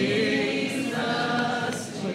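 Congregation singing a hymn together, many voices held on sustained notes.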